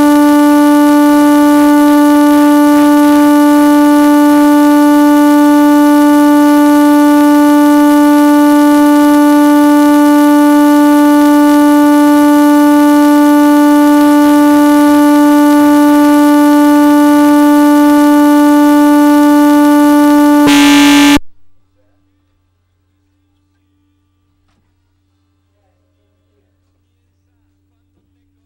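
A loud, steady single-pitched tone with many overtones, held unchanged for about twenty seconds before it cuts off suddenly. It is a fault tone on a broadcast phone line whose call has dropped.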